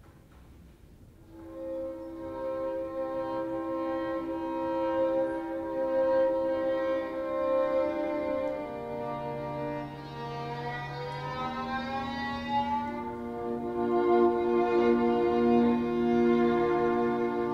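Live strings (violins and cello) come in about a second and a half in, holding long overlapping notes as the players tune up, with one note sliding slowly upward around the middle.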